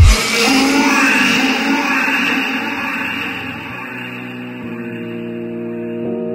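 Background music: a heavy electronic beat cuts off at the start, leaving a fading wash of sound, and steady keyboard notes come in during the second half.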